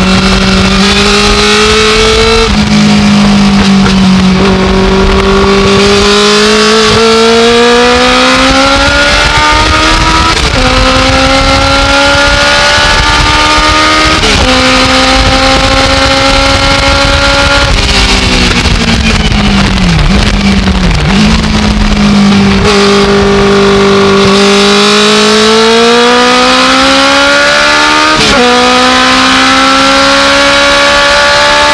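Legends race car's motorcycle-derived engine heard from inside the cockpit at full throttle, its pitch climbing and dropping sharply at three quick upshifts. It then falls away with short throttle blips as the car brakes and downshifts, and climbs again with one more upshift near the end, over steady wind and road noise.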